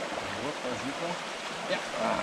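Steady rush of a small river's flowing water, with faint talking in the background.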